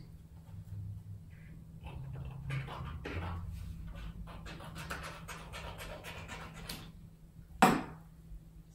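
Scissors cutting painted paper in a run of quick snips, cutting a long strip. A single sharp knock near the end.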